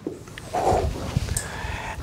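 Dry-erase marker drawing a line across a whiteboard, with a faint thin squeak in the second half and a short muffled sound about half a second in.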